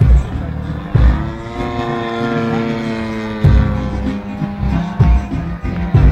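Engine of a radio-controlled aerobatic model airplane running in flight, its pitch falling slowly, mixed with loudspeaker music. Several heavy low thumps stand out as the loudest sounds.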